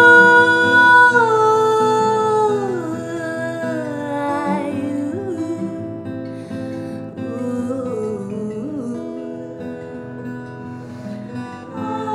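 A woman singing over an acoustic guitar: a long, wavering held note at first that slides downward about two and a half seconds in, after which the singing goes on more softly with the guitar underneath.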